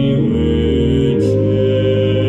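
Two-manual church organ playing sustained hymn chords, the bass note moving about a third of a second in and again just after a second.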